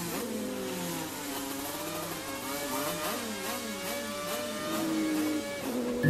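Racing car engine sounds, several engine notes rising slowly in pitch with a warbling stretch of revs about halfway through, used as the sound of an animated logo intro.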